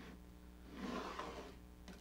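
A marking tool drawn along the edge of a board across a pine board, scribing a line: a faint scratching rub lasting about a second in the middle, over a low steady room hum.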